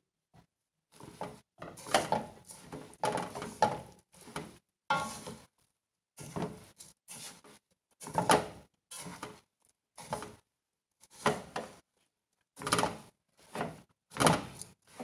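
Silicone spatula scraping and stirring a crumbly roasted flour and dry-fruit mixture in an aluminium pan, in about a dozen separate short strokes with silent gaps between them.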